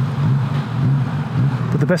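Honda CB1000R's inline-four engine running steadily at low revs as the motorcycle comes to a stop at traffic lights, with a light rush of air. A voice starts near the end.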